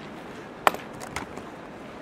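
One sharp click about two-thirds of a second in, then a few fainter clicks, over the steady background hiss of a classroom lecture recording.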